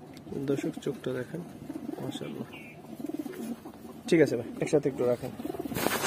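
Caged Giribaz pigeons cooing repeatedly in low, wavering calls, with a short rustling burst near the end.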